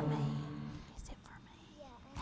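The last held chord of a congregational hymn dies away in the first second, followed by faint whispering and murmured voices.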